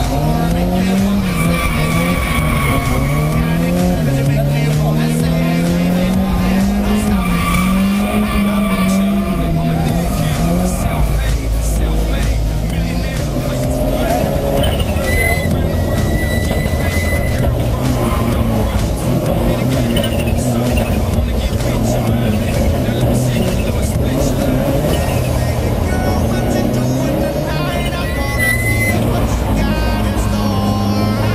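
Race car engine revving up and down through the gears at speed, heard from inside the cabin, with short spells of tyre squeal in the corners.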